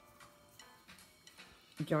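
A few faint, light clicks in a quiet room, unevenly spaced; a woman's voice starts near the end.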